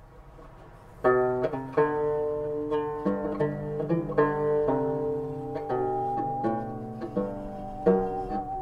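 Banjo picking begins about a second in, a folk tune of plucked notes that ring on. From about halfway, a high held tone with a slight waver joins it, the bowed singing saw.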